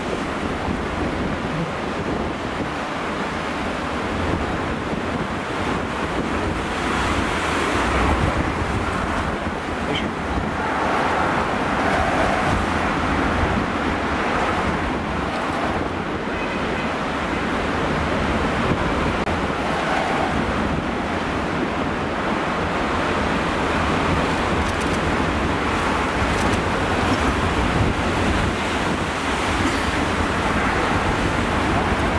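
Heavy storm surf breaking on rocks and against a harbour breakwater, a continuous rush of water that swells each time a big wave breaks. Strong wind buffets the microphone throughout.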